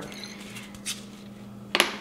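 Quiet handling of a small essential oil bottle and a glass jar on a digital kitchen scale: a faint tick about a second in and a sharper click near the end.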